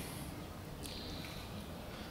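Quiet background noise with a single faint click just under a second in.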